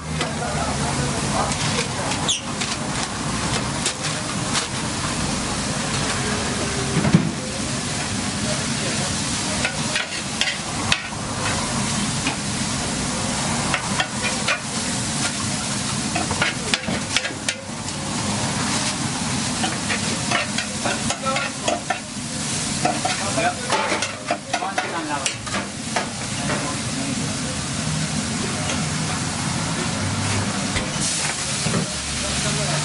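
Minced meat sizzling on a wide steel griddle while a metal spatula stirs and scrapes it, with frequent sharp clicks and scrapes of metal on metal over the steady frying.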